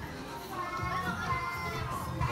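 Indistinct chatter in a large room, with a child's high voice and faint music underneath.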